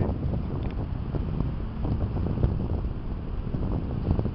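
Wind buffeting the camera's microphone: a continuous, uneven low rumble.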